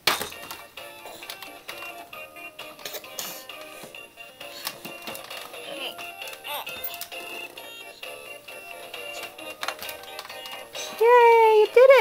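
Electronic tune playing from the musical head of a Fisher-Price ride-on zebra toy, starting abruptly as it is set off, with small plastic clicks and rattles throughout. Near the end a loud voice says "I did it!"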